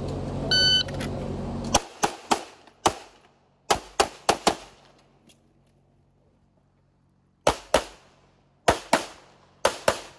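A shot timer beeps once, then a Canik Rival 9mm pistol fires about fourteen shots: eight quick shots over the next three seconds, a pause of about three seconds, and then three fast pairs.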